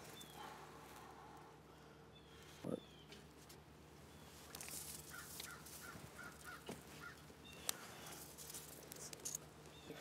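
Faint, sparse crackles and pops from a small twig-and-leaf fire catching in a metal fire pit. The loudest pop comes about a third of the way in, and a few faint chirps follow over very low room tone.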